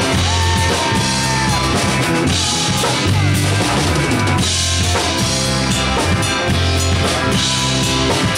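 A rock band playing live, with a full drum kit (kick drum, snare and cymbals) over electric guitar.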